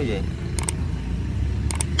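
Two quick double mouse-clicks from an animated subscribe-button overlay, the first about half a second in and the second near the end, as the cursor clicks 'Subscribe' and then the bell. Beneath them a steady low rumble of engine noise runs throughout.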